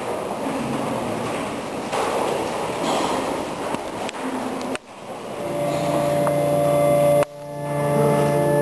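An indistinct, noisy murmur cuts off abruptly just before five seconds. Church organ chords then fade in and are held steady, broken briefly by a second sharp cut just past seven seconds.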